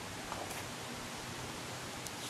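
Steady background hiss with a faint paper rustle about half a second in, as a page of a glossy brochure is turned by hand.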